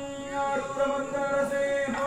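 Devotional chant-like melody: a single line held on long notes, with slow bends in pitch between them.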